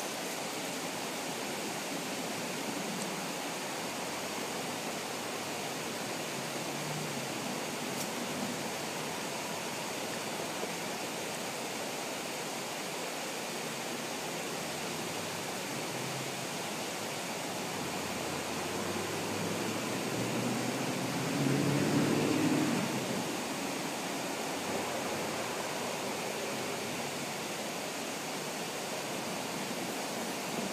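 Steady outdoor background hiss with no distinct source. A louder low rumble swells for two or three seconds about twenty seconds in.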